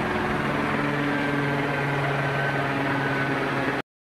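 Vehicle engine idling with a steady low hum, cut off abruptly near the end.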